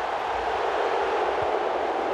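Football stadium crowd cheering after a goal, a steady roar of many voices.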